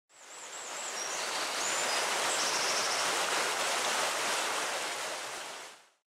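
Steady rushing water ambience that fades in and then fades out, with a few faint high chirps and a short trill in the first three seconds.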